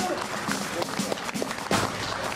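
Quick, irregular clicks of a dog's claws on a hard terminal floor as it prances about on its leash, with voices in the background.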